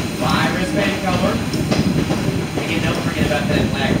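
A passenger train rolling along, a steady rumble and rattle of the coach's wheels and running gear heard through an open window, with voices over it.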